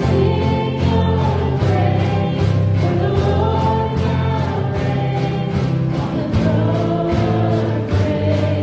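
Live worship band playing a congregational song: voices singing held lines over acoustic guitar and a drum kit keeping a steady beat of about two strokes a second.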